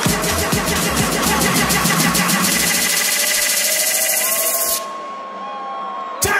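Electronic dance music build-up: a drum roll speeds up until it blurs under a rising hiss. About five seconds in, the beat and bass cut out, leaving a held synth tone and sliding pitches.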